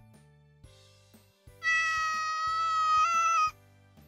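A cat's single long meow, lasting about two seconds and fairly even in pitch, with a small step up near its end, over soft background music.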